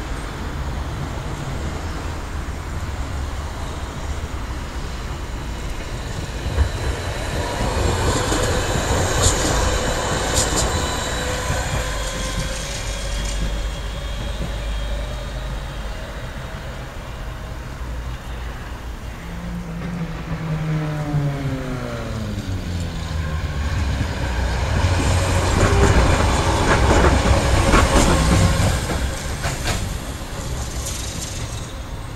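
Electric trams running on street track: rolling noise, with a faint wheel squeal about a third of the way in. A falling electric whine comes about two-thirds through, and the loudest part near the end is wheels clattering over rail joints and crossings.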